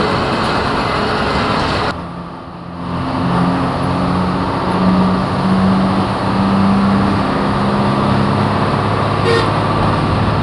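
Engine and road noise of a bus heard from inside its cabin while it drives, a steady drone. The engine note climbs for a few seconds, then drops to a lower note about eight seconds in, and the noise briefly thins out about two seconds in. A short high beep sounds near the end.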